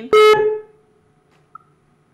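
A brief greeting in a voice held on one pitch, dying away within half a second, then a pause with only faint room tone and a faint short tone about one and a half seconds in.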